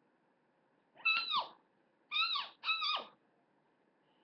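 Three short, high meows, each sliding down in pitch; the last two come close together.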